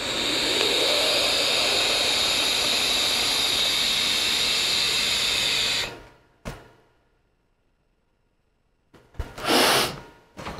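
Long draw on a wide-open Arctic sub-ohm tank fired at 40 watts: a steady rush of air through the airflow holes with the coil sizzling, lasting about six seconds and then stopping. A click follows, then quiet, and a short breathy burst near the end.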